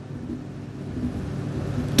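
A pause between a man's sentences, filled by a steady low background rumble.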